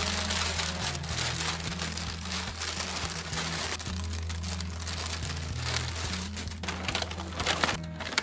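Thin plastic bag crinkling and rustling continuously as it is handled and clothes are packed into it, over background music with steady low notes.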